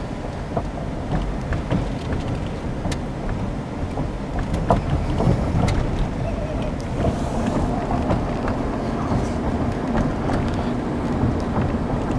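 Steady low rumble of a car driving, heard from inside the cabin: engine and tyre noise with some wind.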